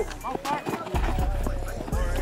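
Players' short shouts across an open field during a play, over a low rumble that comes and goes, with scattered quick ticks.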